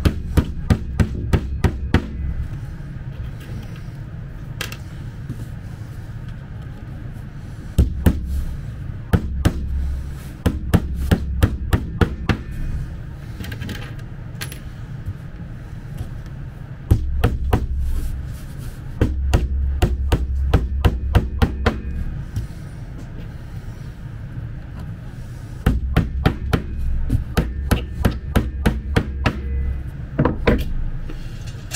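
Small nails being hammered into a thin fibreboard panel on a chipboard drawer box: quick, light hammer taps, about four or five a second, in several runs with pauses between.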